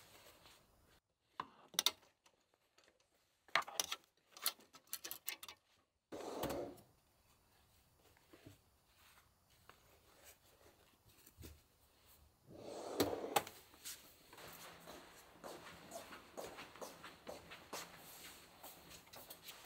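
Clothes being handled: fabric rustling with scattered small knocks, and a dresser drawer sliding as folded laundry is put away.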